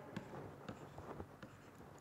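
Faint ticks and scratches of a stylus writing on a pen tablet.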